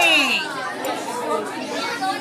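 Background chatter of a roomful of children, many voices talking over each other.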